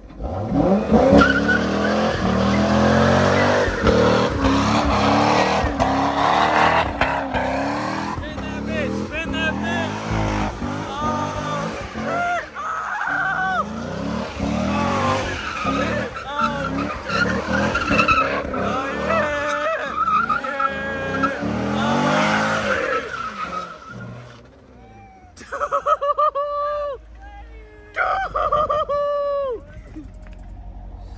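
A Corvette's LS3 V8 revs hard as its rear tyres spin and squeal through donuts. This starts suddenly and runs for more than twenty seconds, then drops away about 24 seconds in.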